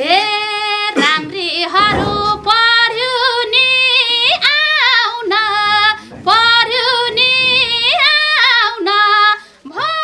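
A woman singing a Nepali folk song solo, unaccompanied, in long held notes that slide up into each phrase, with two brief pauses between phrases.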